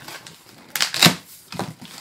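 Packing tape being ripped off a cardboard box and the flaps pulled open: scattered rustling, with a short burst of ripping about a second in.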